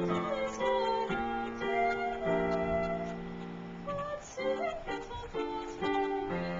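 A young girl's solo singing voice with piano accompaniment from a digital piano: sustained sung notes over held piano chords.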